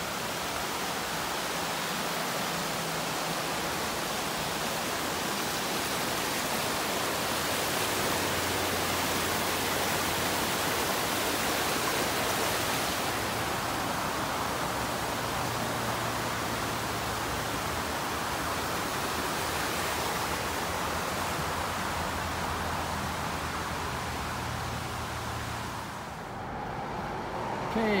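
A rushing stream: a steady, even rush of water. It cuts off about two seconds before the end.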